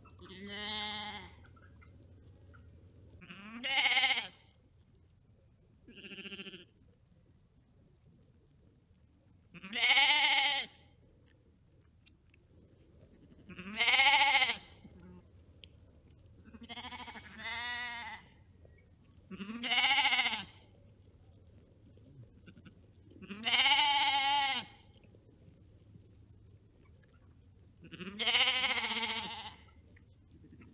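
Sheep bleating: about ten separate baas, each a second or so long, rising and then falling in pitch, spaced a few seconds apart, two of them close together in the middle. A faint low hum lies underneath.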